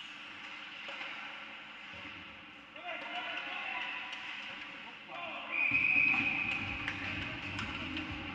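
Ice hockey rink sound with indistinct voices and scattered sharp clicks. A little under six seconds in comes a single short, shrill referee's whistle blast, the loudest sound, stopping play.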